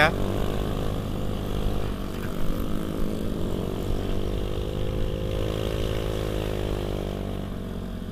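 Honda Beat Street scooter's small single-cylinder engine and exhaust running under way at a steady cruise, with a buzzy note that sounds like a chainsaw. The pitch dips slightly and picks up again around the middle.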